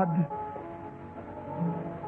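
Soft background music of steady held chords, with the end of a man's spoken word trailing off just at the start.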